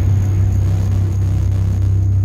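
A loud, steady low rumble with a faint, steady high tone above it.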